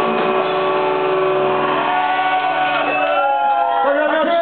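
Live rock band's amplified electric guitars holding a sustained chord as the song ends. Shouts and whoops from the crowd come in during the last second or so.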